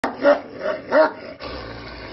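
A dog barking: three barks within about a second, then a pause.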